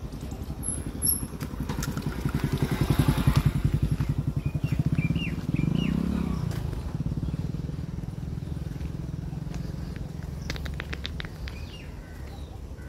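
A motor vehicle's engine running with a rapid even pulse. It grows loudest about three seconds in, then eases off without stopping.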